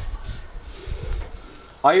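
Paracord rubbing and sliding through the hands as it is handled and pulled, a soft rasping hiss. A man's voice starts near the end.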